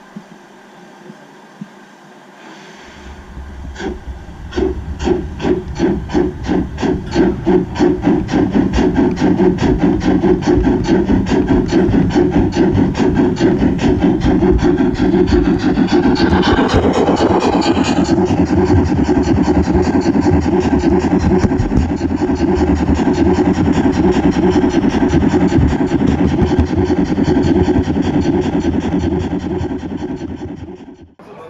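Gauge 0 model steam locomotive pulling away: steam chuffs begin about three seconds in and quicken over the next several seconds into a steady fast beat, over a continuous rumble of the running gear on the track. About halfway through, a brighter, louder sound lasts about two seconds.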